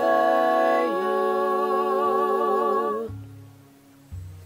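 Several voices singing a cappella in harmony, holding long chords with vibrato. The chord changes about a second in and fades out around three seconds in, leaving a faint low tone.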